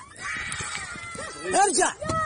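High-pitched voices crying out and screaming in distress, rising to the loudest cries in the last half second.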